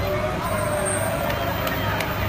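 Steady low background rumble with faint distant voices, and a couple of faint clicks in the second half.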